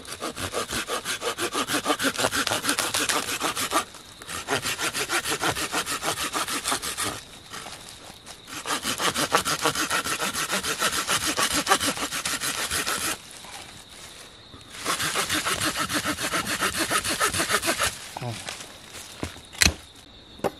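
Hand pruning saw cutting through a thin dead wooden branch, in four bouts of fast back-and-forth strokes, about four a second, with short pauses between. A single sharp click near the end.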